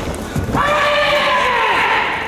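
A karate competitor's kiai: one long, high-pitched shout held for over a second, dropping in pitch as it trails off.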